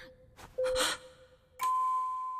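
Anime soundtrack effect: a steady high-pitched tone starts about one and a half seconds in and holds, over a faint low hum. Before it comes a brief breathy sound.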